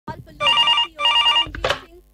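Telephone ringing: two short trilling electronic rings, each about half a second long, then a brief voice sound near the end.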